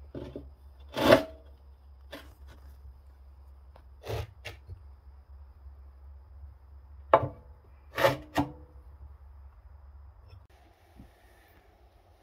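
Firebricks being fitted by hand into a wood stove's firebox: a handful of sharp knocks and scrapes as brick meets brick and steel, the loudest about a second in. A low hum runs underneath and stops shortly before the end.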